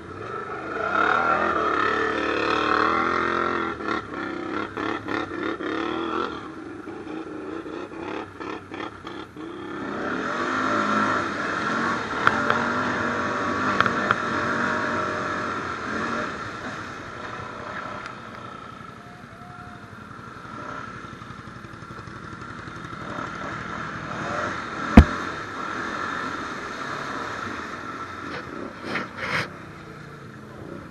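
Can-Am ATV engine running and revving through mud and water, in two louder surges of throttle early and mid-way, then running lower. Clattering and scraping from the machine, with one sharp knock late on.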